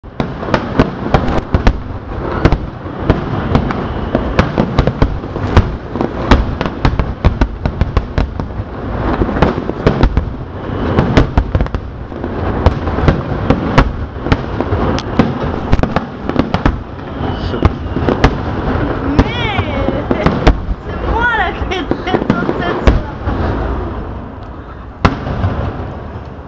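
Fireworks display: a dense barrage of shell bursts, many sharp bangs in quick succession over continuous crackling. Partway through come high wavering whistles, and the barrage thins out near the end.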